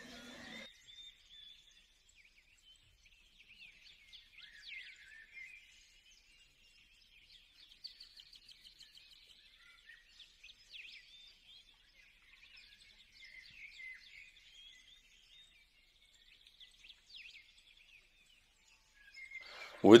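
Faint, intermittent bird chirps in the background, with short quick twitters scattered through the quiet.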